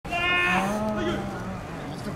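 Drawn-out shouted calls from ballplayers' voices, a higher one breaking off about half a second in and a lower one held for about a second before fading.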